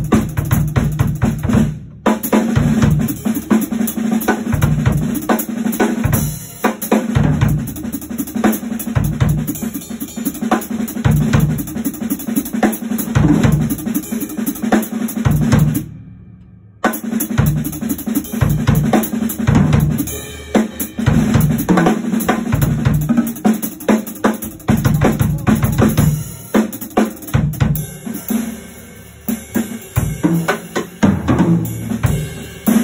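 Yamaha drum kit played as a jazz drum solo: fast, busy patterns on snare, toms and bass drum with cymbals. There is a brief break about sixteen seconds in.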